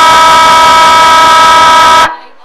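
Football ground siren sounding one loud, steady blast of about two seconds, of two pitches together, to start the quarter.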